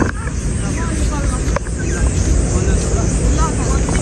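Chatter of people strolling along a walkway, in scattered fragments rather than clear talk, over a steady low rumble.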